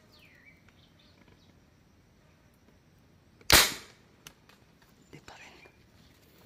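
A marble gun fired once: a single sharp crack about three and a half seconds in that dies away within half a second. A short falling bird call sounds near the start.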